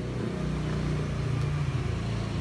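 A low, steady motor hum, a little stronger in the first half.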